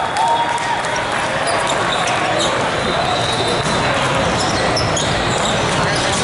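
Din of a large hall with several volleyball games under way: many balls being struck and bouncing, in a steady patter of sharp hits, with players' voices in the reverberant hall.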